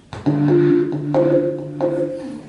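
Recorded instrumental music played back over loudspeakers in a hall: a short run of sustained pitched notes, a new note or chord entering every half second or so, dying away just after the end.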